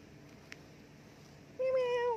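A street cat meowing once, starting near the end: a single drawn-out call that holds one pitch and then drops as it ends.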